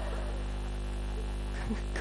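Steady electrical mains hum, a low buzz with a stack of even overtones, running under a faint background hiss.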